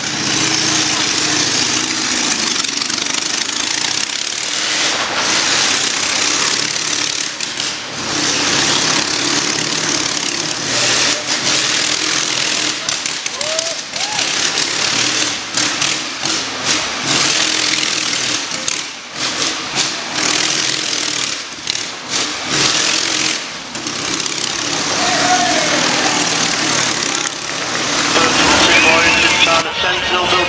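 A motorcycle engine running and revving inside a wooden Wall of Death drum, the noise filling the drum, with crowd voices underneath.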